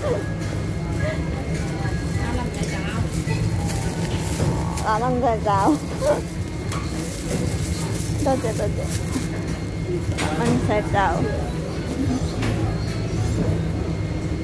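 Indoor market ambience: a steady low rumble with scattered voices of other people calling out or talking now and then.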